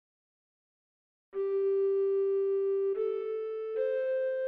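Renaissance-style recorder consort music: after a second or so of silence, a single voice enters alone, playing long, perfectly steady notes that step upward three times.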